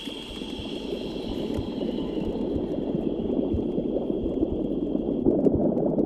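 Rushing, gurgling liquid sound effect for blood flowing in the vessels, swelling steadily louder. A thin, steady high tone runs underneath and stops about five seconds in.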